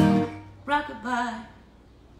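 A final strummed chord on an acoustic guitar rings out and dies away within about half a second, ending the song. Then comes a short vocal sound about a second in.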